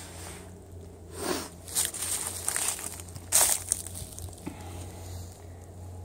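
Footsteps crunching and rustling on dry leaves and rough ground, in a few irregular bursts, the sharpest a little after three seconds in, over a steady low hum.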